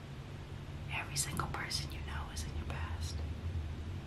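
A woman whispering a few words under her breath for about two seconds, starting about a second in, over a steady low electrical hum.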